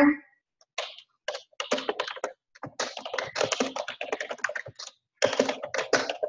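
Typing on a computer keyboard: quick runs of keystrokes, with a short break about five seconds in.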